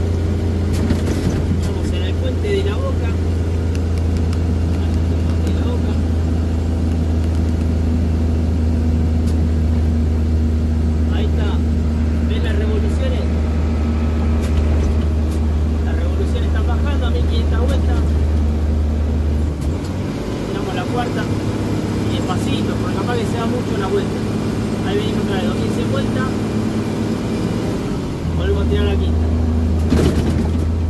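Mercedes-Benz truck's diesel engine running steadily at highway speed with road noise, heard from inside the cab. The deep engine drone drops away about two-thirds of the way through and comes back near the end.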